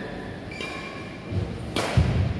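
A badminton racket strikes a shuttlecock once near the end, a single sharp crack with a low thud, as the serve is played.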